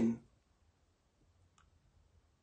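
A man's spoken word trails off just after the start, then near silence, broken by one faint click about one and a half seconds in.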